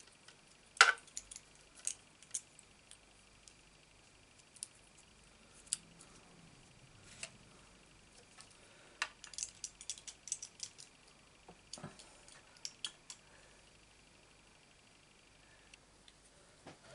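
Faint, scattered light metallic clicks and taps of a small pick tool working cut cardstock out of a thin metal leaf die. There is one sharp click about a second in and a quick run of clicks around nine to eleven seconds.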